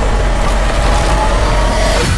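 Movie-trailer sound effects: a loud, steady, dense rumble with deep low end, like a sustained blast or destruction roar.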